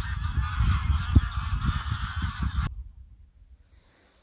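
A large flock of geese flying overhead, many birds honking at once in a dense overlapping chorus, with a low wind rumble on the microphone. The honking cuts off suddenly about two-thirds of the way through, leaving near quiet.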